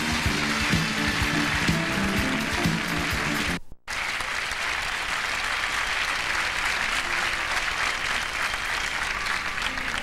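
Studio audience applauding over band music with a steady beat. About four seconds in, the sound cuts out for a moment, and after that the applause goes on without the music.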